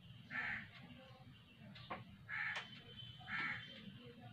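A bird calling three times in short, loud calls: once near the start, then twice close together in the second half.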